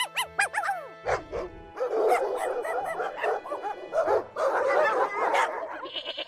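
A rapid string of dog barks and yips, laid over soft background music. A few higher yelps in the first second are followed by a dense run of overlapping barks that stops near the end.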